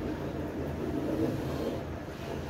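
Steady low rumble of room noise with faint, muffled murmuring voices.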